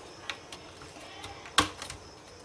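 Small clicks of hands handling a laptop RAM module in its memory slot: a faint click about a quarter-second in, then a single sharp, louder click about a second and a half in.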